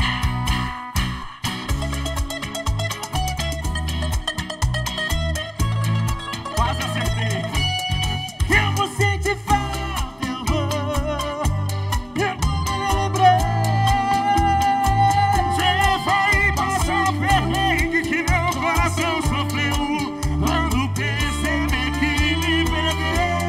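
Live band music: acoustic guitar and accordion over a steady, even beat, with a melody line above.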